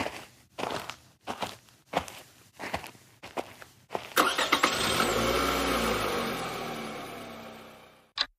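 Footsteps, about two a second, of people walking off; then about four seconds in a car engine starts and runs, fading away toward the end.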